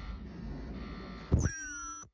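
Ultrasonic terminal welding machine running a weld on copper cable: a steady rushing noise, a sharp knock about one and a half seconds in, then a high-pitched whine of several steady tones that cuts off at the end.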